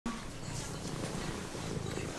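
A low, continuous rumbling growl from a pet that stops right at the end.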